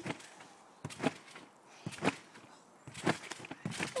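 Trampoline bouncing: a person's feet landing on the springy mat, giving a sharp thump about once a second, five times.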